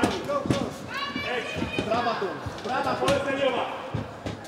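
Men shouting ringside over a kickboxing bout, with a few sharp thuds of gloved punches and kicks landing, one near the start, one about a second in and one about three seconds in.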